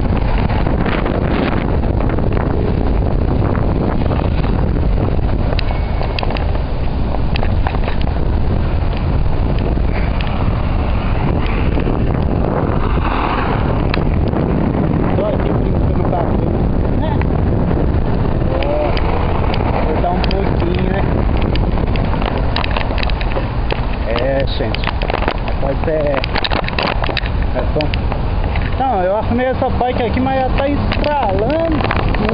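Wind buffeting the microphone of a camera carried on a moving bicycle, a loud steady rumble. In the second half, short wavering tones rise and fall over it.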